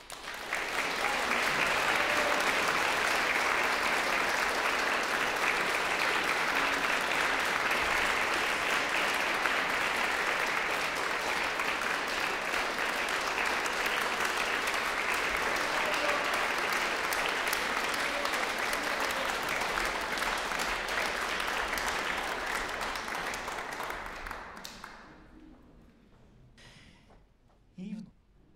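Audience applauding, starting all at once as the music ends, holding steady for over twenty seconds and dying away near the end.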